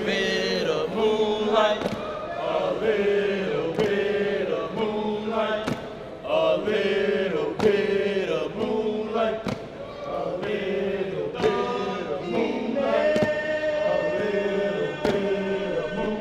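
A group of men chanting in unison in rhythmic sung phrases, with a sharp beat roughly every two seconds keeping time.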